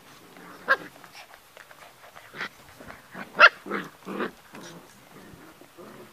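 Puppies about eight weeks old playing, giving a string of short yips and barks; the loudest comes about three and a half seconds in.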